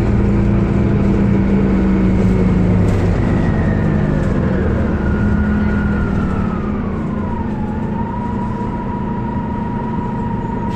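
2004 Orion VII CNG city bus running, its Detroit Diesel Series 50G natural-gas inline-four droning low, with a high drivetrain whine. The whine falls in pitch from about three seconds in to near eight seconds, then holds steady as the overall sound eases off a little.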